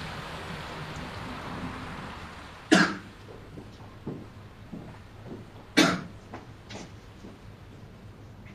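A person coughing twice, about three seconds apart, over a low steady room hum.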